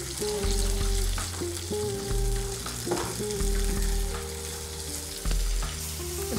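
Chunks of rocoto pepper, onion, garlic and peanuts sizzling steadily in hot oil in a frying pan, stirred and scraped with a silicone spatula.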